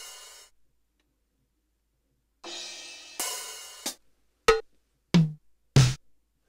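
Yamaha RX11 drum machine, triggered over MIDI from a step sequencer, sounding its drum voices one at a time. After a short gap come two cymbal hits about a second apart that ring out briefly, then three single short drum hits, the first higher-pitched than the other two.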